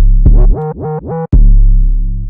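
808 bass playing alone from an FL Studio piano roll: a deep held note, then three short notes that each slide upward in pitch, then a long low note fading away.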